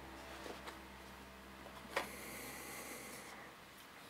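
Faint room tone with a single short click about two seconds in.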